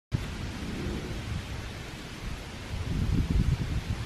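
Wind buffeting the microphone in uneven low rumbles over a steady hiss of wind through the trees, with a stronger gust about three seconds in.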